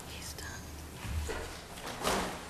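Faint rustling and bumping of a large poster board being pulled out and lifted, with a soft murmured voice.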